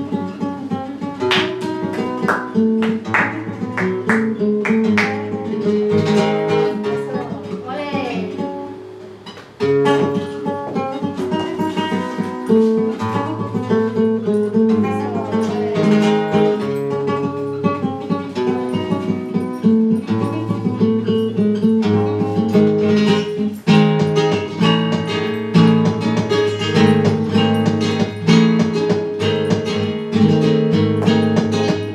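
Spanish flamenco guitar playing a bulería, with rhythmic strummed chords over plucked notes. The playing thins and drops in level about eight to nine seconds in, then comes back suddenly and fuller.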